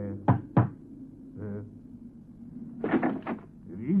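Two quick knocks on a door, close together, about a third of a second in.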